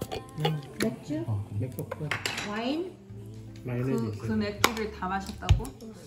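Tableware clinking and knocking at a dining table, in scattered sharp strikes, with the loudest knocks near the end.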